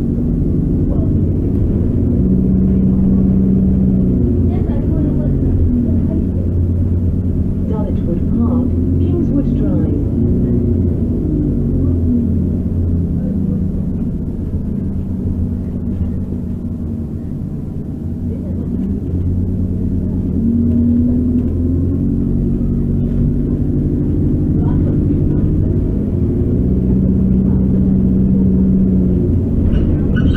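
A bus's engine and drivetrain running under way, heard from inside the passenger saloon, its pitch rising and falling again and again as the bus pulls away and changes speed, over a steady road rumble. The engine eases off briefly about halfway through before pulling again.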